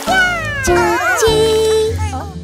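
A children's song with backing music and a high, playful cartoon voice whose pitch glides down and up, then holds one steady note near the end.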